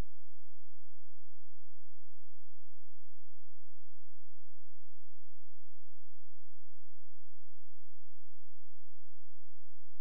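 A steady, pure high-pitched electronic tone with fainter higher tones above it, and no music.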